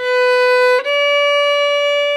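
Violin bowed: a steady held note, then, a little under a second in, a clean change to a note about a step higher, which is held on.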